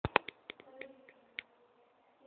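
A RipStik caster board's wheels and deck clicking and knocking on a wooden floor as it is ridden: a quick run of sharp clicks, loudest at the very start and thinning out to a few light taps after about a second and a half.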